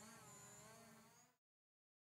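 Near silence: a faint trace of sound with a few wavering tones that fades out and cuts to dead silence a little over a second in.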